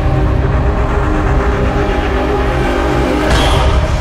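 Cinematic logo-intro sound design: a loud, low rumbling drone with held tones, and a rising whoosh a little over three seconds in as the logo appears.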